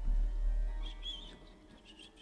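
Sparse free-jazz improvisation: a deep low rumble swells and fades over the first second, then short, high chirping sounds begin and repeat.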